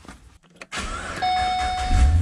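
Holden VE Calais V8 engine being started, its sound beginning less than a second in and growing. About a second in, a steady electronic warning tone from the car starts and sounds over it.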